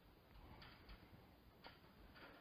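Near silence: faint room tone with a few faint, scattered clicks.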